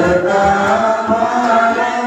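Voices chanting a hymn in a slow, held melody, with a few deep tabla strokes underneath.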